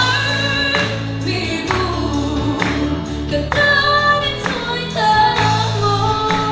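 A woman singing held, wavering notes into a microphone, over an accompaniment with a steady bass line and a regular beat.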